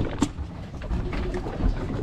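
A steady low rumble of wind and water around a small boat at sea, with a couple of sharp clicks near the start.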